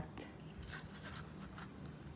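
Faint rubbing of cardstock and a few light ticks as a piece of card is handled against a small plastic paper punch.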